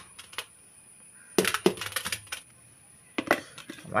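Sharp metallic clinks and knocks of a tin can and a trowel against a steel mortar pan: a few near the start, a quick cluster around the middle and one more near the end.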